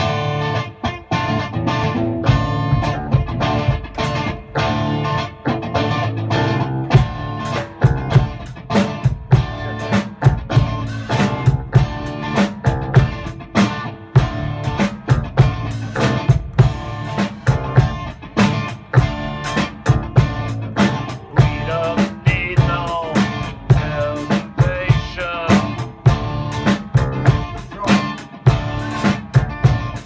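A band playing: electric guitar over drums with a steady beat, starting abruptly.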